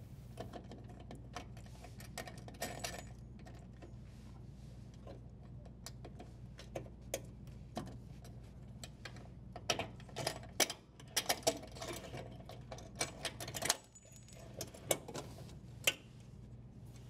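Irregular small clicks, taps and rattles of a strain relief nut and power wires being worked loose and pulled from a dishwasher's sheet-metal junction box. The clicks come thicker in the second half.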